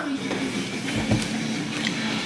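Quiet whispering over faint music, with a soft low thump about a second in.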